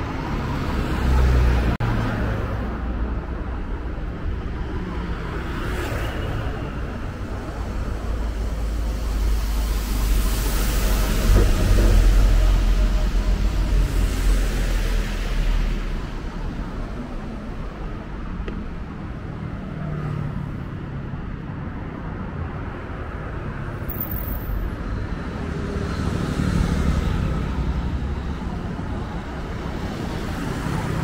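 City street traffic: cars passing with a constant deep road rumble. One vehicle builds to a louder pass around the middle, and a smaller one follows near the end.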